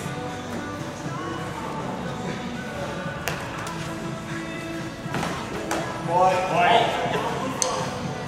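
Background music plays through the hall. A few sharp clacks of training dussacks striking come during the sparring exchange, and a voice calls out about six seconds in.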